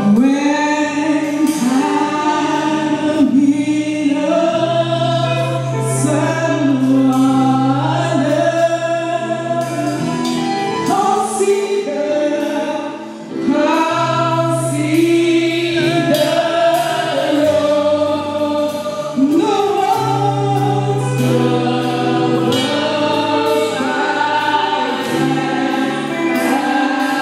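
Gospel singing with a group of voices over a steady accompaniment of long held bass notes.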